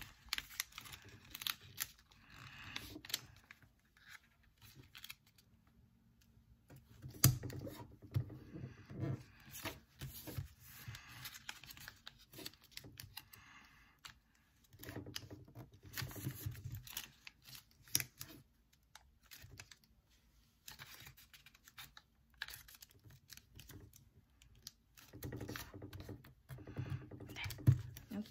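Origami paper being folded and creased by hand against a tabletop: irregular crinkles, rustles and small taps, coming in clusters with quieter gaps between.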